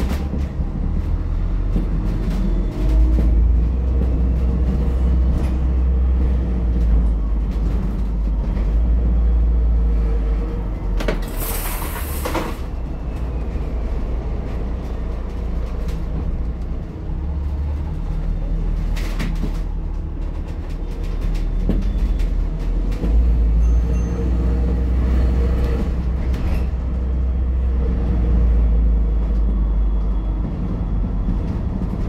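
Inside an ADL Enviro400H MMC hybrid double-decker bus with a BAE hybrid drive, with the air conditioning off: deep drivetrain and road rumble that swells and eases as the bus speeds up and slows, with faint whines rising and falling. A short burst of hiss comes about eleven seconds in.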